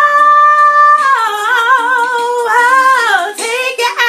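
Woman belting a wordless high note, held for about a second, then breaking into a melismatic run with wide vibrato that dips lower near the end.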